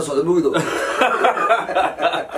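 Two men laughing and chuckling, mixed with animated talk.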